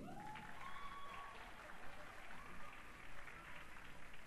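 Audience applauding in a theatre, steady clapping throughout, with a faint voice or two rising above it in the first second or so.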